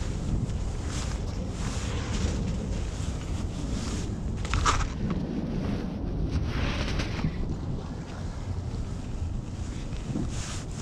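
Wind buffeting the microphone in a steady low rumble, with rustling as gear and a landing net are handled and a brief clatter about halfway through.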